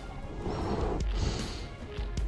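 Background music or sound loop from a dinosaur augmented-reality app: a short pattern with deep, heavy thuds that repeats about every two seconds.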